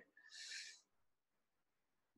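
Near silence, broken once about half a second in by a faint, short breath.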